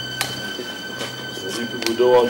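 A steady high-pitched electrical whine over a low hum, with two sharp clicks, one just after the start and one near the end, and faint voices toward the end.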